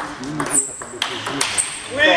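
Table tennis ball in a rally: sharp clicks of the celluloid ball on the rubber bats and the table, about every half second.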